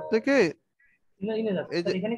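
A man's voice speaking, with a short pause of under a second near the middle.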